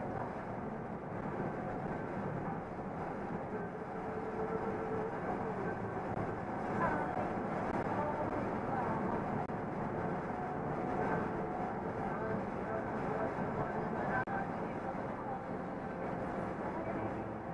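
Steady engine drone and tyre and road noise inside a truck cab cruising at highway speed.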